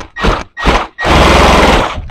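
Impact wrench hammering in three short bursts, then a steady run of about a second, breaking loose an engine's motor mount bolt.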